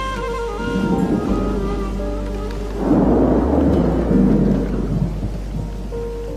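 Thunder rumbling in two rolls: a short one about a second in, then a louder, longer one from about halfway, over held low notes of background music.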